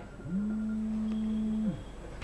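A man's voice holding a long, level hesitation hum, like a drawn-out "mmm" or "uhh", for about a second and a half.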